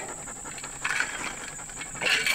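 A man drinking in gulps from a water bottle, the swallowing noises coming in about halfway through. A steady high insect drone runs behind.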